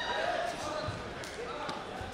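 Taekwondo fighters' footwork on the competition mat: a few sharp taps and stamps of bare feet, mixed with voices calling out.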